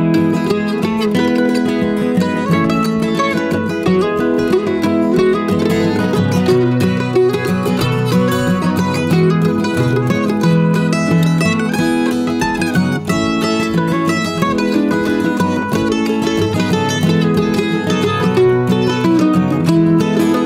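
F-style mandolin picking a quick melodic instrumental break, over acoustic guitar accompaniment.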